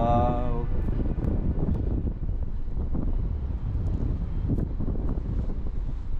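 Wind buffeting the camera microphone in paraglider flight, a low rumbling flutter that rises and falls in gusts. A held music chord cuts off within the first second.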